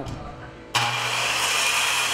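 Handheld electric circular saw cutting across a thick wooden plank. It starts sharply about three-quarters of a second in, with a steady high whine over a low motor hum.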